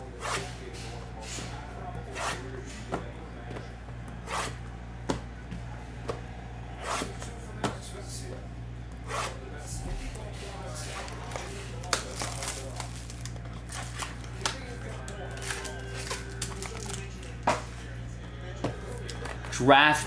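Sealed trading-card boxes and foil packs being handled and opened: scattered short taps, clicks and crinkles over a steady low electrical hum.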